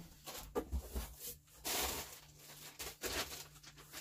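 Faint handling noises: a few light clicks and a brief rustle, like small parts in plastic packaging being handled.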